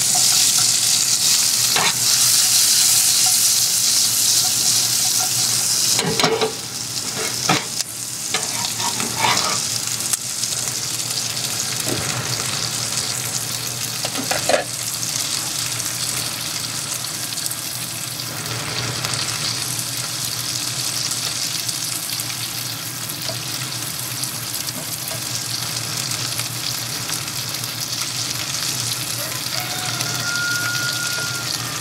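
Chopped green peppers and onions scraped into a hot oiled skillet set off a sudden loud sizzle, followed by several knocks and scrapes of a spatula and cutting board against the pans. Chicken breasts and vegetables then fry in two nonstick pans with a steady sizzle.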